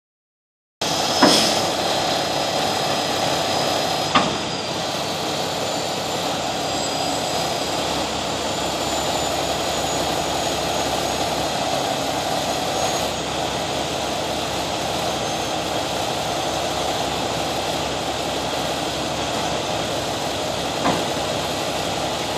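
Heavy rotator wrecker's diesel engine running steadily, driving the boom hydraulics as it slowly lifts and rolls a water-loaded tanker trailer. Sharp knocks come about a second in, about four seconds in, and a fainter one near the end.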